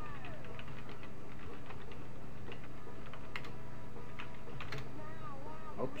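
Typing on a computer keyboard: irregular key clicks while a terminal command is entered, with a few sharper keystrokes about three and a half and nearly five seconds in.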